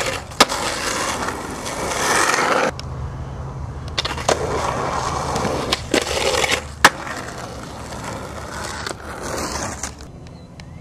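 Skateboard wheels rolling on concrete, broken by sharp clacks of the board popping and hitting the concrete stairs. The rolling stops abruptly about three seconds in and starts again, and the loudest crack comes about seven seconds in.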